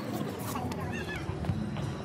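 Voices, including a high-pitched child's squealing voice, with scattered sharp clicks like footsteps on stone paving.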